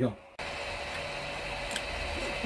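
Kingroon KP3S 3D printer running a print: a steady whir from its upgraded cooling fans and motors, with a faint high tone. The whir sets in suddenly about a third of a second in.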